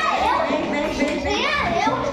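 Several people talking and calling out over one another, with high-pitched voices among them whose pitch swoops up and down.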